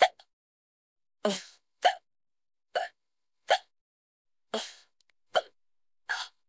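A person hiccuping repeatedly, five short sharp hiccups about a second apart, two of them preceded by a quick, noisy intake of breath.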